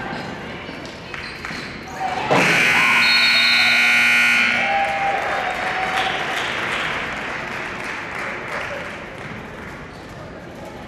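Gymnasium scoreboard buzzer sounding one steady blast of about two seconds as the game clock hits zero, marking the end of the period. Crowd noise and voices fill the hall around it.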